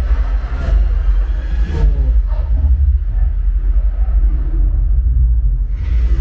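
Film soundtrack played loud through a Sonos Arc soundbar and Sonos Sub home-theatre system: a deep, heavy bass rumble under music and effects. The treble falls away for a few seconds in the middle and returns in full just before the end.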